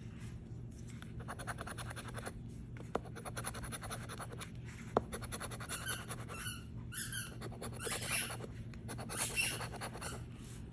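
A coin scraping the latex coating off a scratch-off lottery ticket in runs of rapid short strokes with brief pauses. In the second half a playful puppy squeaks several times.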